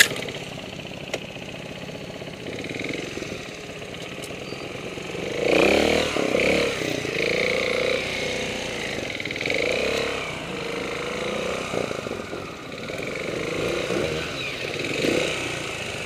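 Trials motorcycle engine running at low revs on a steep rocky climb, with repeated short blips of the throttle that rise and fall in pitch; the loudest comes about five and a half seconds in.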